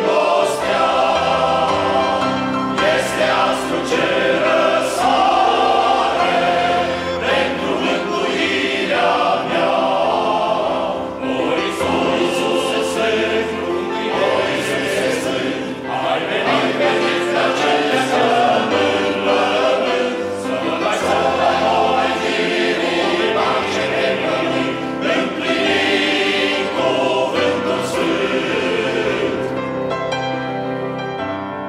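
A male choir singing in several parts, the held chords swelling and easing.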